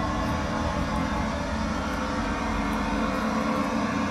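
Steady low rumble with a faint hum through it, unbroken throughout.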